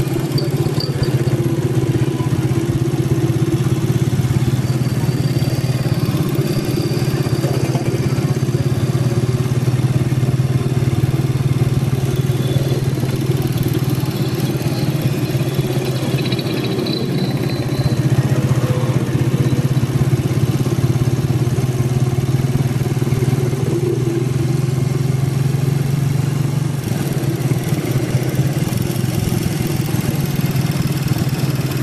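Small engine, motorcycle type, running steadily while under way, with a low hum that holds at a fairly even pitch throughout.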